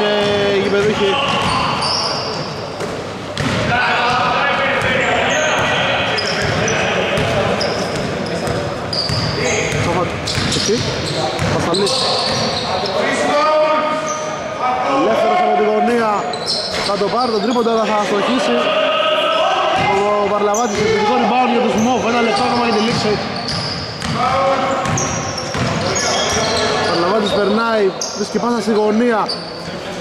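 A basketball being bounced on a wooden court during a game, the bounces echoing in a large sports hall, with voices talking and calling over it almost throughout.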